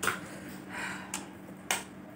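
Close-miked wet mouth clicks and smacks while chewing a mouthful of noodles and egg: a few sharp clicks over a faint steady hum.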